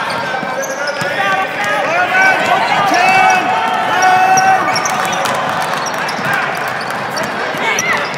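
Several voices of spectators and players calling out at once during a basketball game, none distinct as words, with a basketball bouncing on the hardwood court and short sharp clicks from play.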